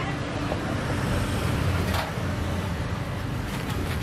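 Steady low rumble of road traffic with a faint hum, and a single sharp click about two seconds in.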